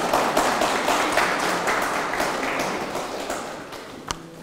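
Audience applauding in dense, overlapping claps that die away toward the end.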